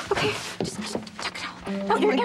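A woman whimpering and making strained, wordless sounds of distress, with brief scuffling noises, over a faint steady background music tone.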